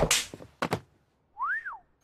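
A sharp slap to the face at the very start, followed by a couple of lighter knocks. About one and a half seconds in comes a short whistle that rises and then falls in pitch.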